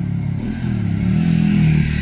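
Motorcycle engine accelerating along the road, its pitch rising and growing louder.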